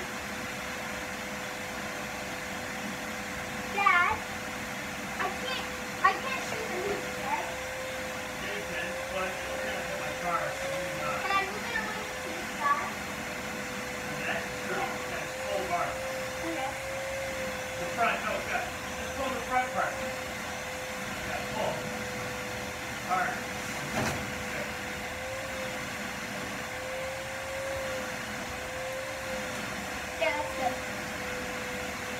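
A vacuum cleaner running with a steady, slightly wavering hum while a car is being cleaned, under faint, scattered voices.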